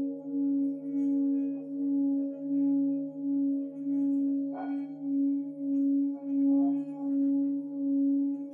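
Singing bowl sounding a sustained, steady low tone with overtones, its level swelling and fading about one and a half times a second. A short light tap sounds about halfway through.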